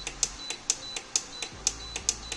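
Prestige PIC 20 WIZ induction cooktop's control-panel button clicking and beeping in a quick even series, about four a second, each a click with a short high beep, as the whistle-counter setting steps up one count at a time.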